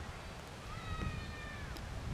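A single high, drawn-out mewing animal call lasting about a second, rising slightly at the start and dropping away at the end, over wind rumble on the microphone.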